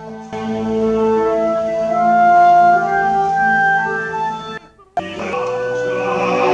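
Orchestral opera music from a performance recording: a woodwind melody over held chords. It drops out briefly just before the five-second mark and then resumes.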